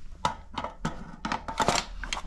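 Ten-round shotgun magazine being handled: a quick run of sharp clicks and knocks, about eight of them, as the magazine is moved and knocked about in the hand.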